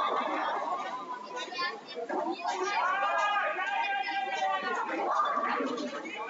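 Indistinct chatter of people talking in a bowling hall, with one voice most prominent and drawn out in the middle.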